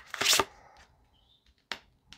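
A tarot deck handled and shuffled, one short rustle of cards, then a single light tap near the end as a card is laid down on the cloth.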